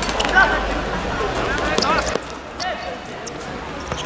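Players shouting short calls to one another while a football is kicked on a hard court, with several sharp ball thuds, the loudest about half a second in.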